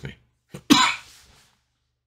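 A man coughs once, short and sharp, trailing off over most of a second.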